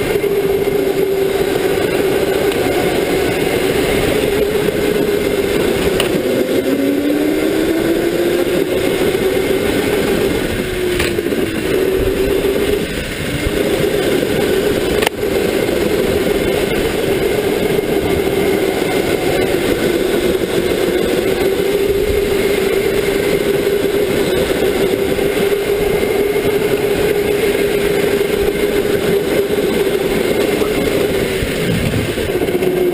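Electric go-kart motor whining steadily at speed, heard from the driver's seat. A second, lower whine rises in pitch between about seven and ten seconds in, and there is a single sharp click shortly after the middle.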